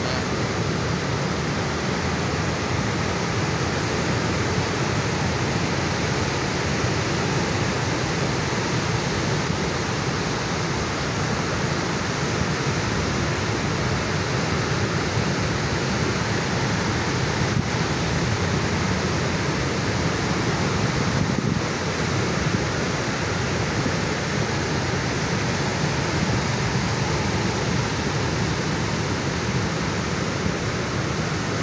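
Ocean surf breaking and washing up a beach, a steady wash of whitewater that never lets up.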